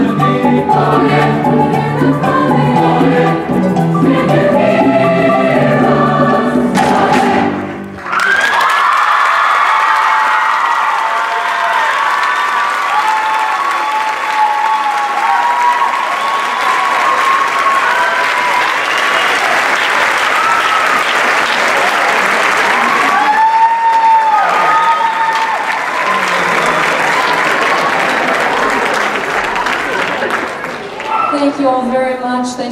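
Large choir singing with piano, the song cutting off about eight seconds in; then a large audience applauds, with cheers rising out of the clapping.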